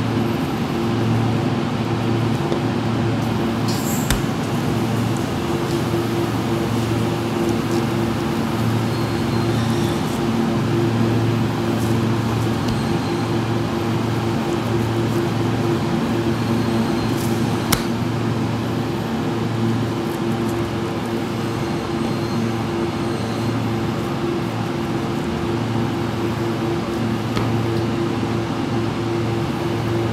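Steady low machine hum with a constant droning pitch, with two brief sharp clicks partway through.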